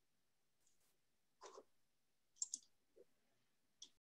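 Near silence broken by a few faint, short clicks, the sharpest a quick pair about two and a half seconds in.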